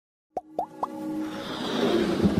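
Intro-animation sound effects: three quick pops rising in pitch, about a quarter second apart, followed by a swelling whoosh that grows steadily louder.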